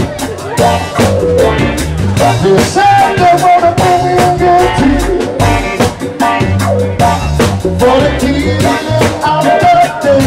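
Live band music: drums, bass guitar, electric guitar, percussion and keyboards playing a steady groove, with a male singer's voice.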